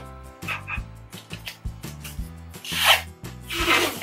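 Adhesive tape being pulled off the roll, louder in two long pulls about a second apart near the end, over background music with a steady bass line.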